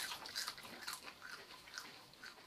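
Faint, scattered chewing and mouth sounds of people biting into and chewing raw chilli peppers.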